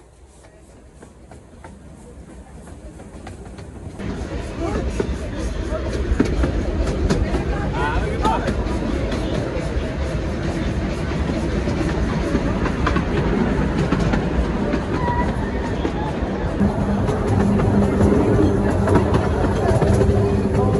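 Miniature railway train running on its track, growing louder over the first few seconds as it picks up speed, then a steady rumble with the wheels clicking over the rail joints.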